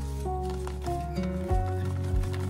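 Background music: a light melody of held notes stepping from one pitch to the next over a bass line, with a soft low beat coming in near the end.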